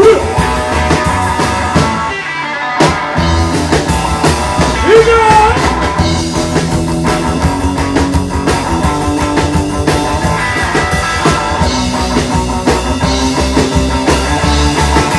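Live rockabilly trio playing an instrumental passage: electric guitar lead with bent notes over upright bass and drums. About two seconds in the band briefly stops, then crashes back in on a hit.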